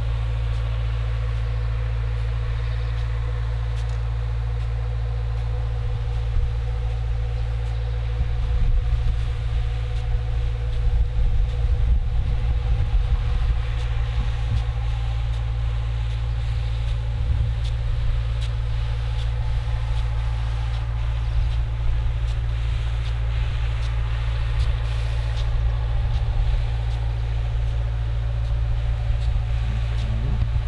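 Steady engine-like drone: a constant mid-pitched hum over a heavy low rumble. The rumble turns gusty and uneven for several seconds in the middle.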